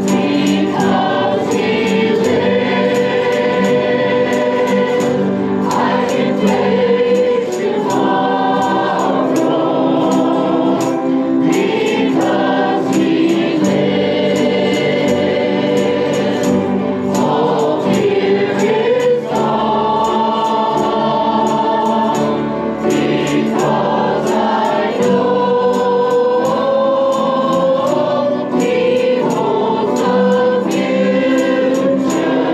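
A small women's church choir singing a gospel song together in harmony, with held notes, over an accompaniment that keeps a steady beat of high ticks.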